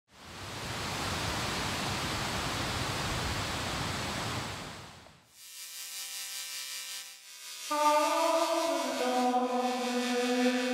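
A steady rush of noise for about five seconds that fades out, then background music of long held notes, which grow louder and move to new pitches a little before the end.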